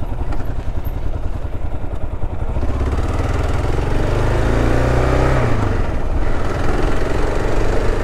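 Motorcycle engine pulling away under acceleration. Its pitch rises for a few seconds, then drops at a gear change a little past halfway, with steady wind noise on the microphone.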